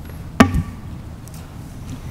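A single sharp knock about half a second in, with a low thud just after it, picked up close to the lectern microphone; otherwise quiet room tone.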